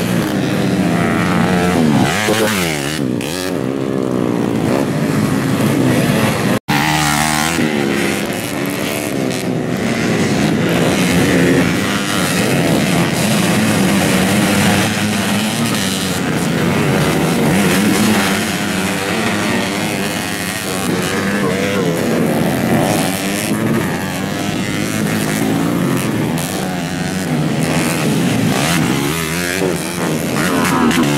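Several small-capacity dirt bike engines racing, revving up and down with overlapping rising and falling pitch as the bikes pass. The sound cuts out for an instant about six and a half seconds in.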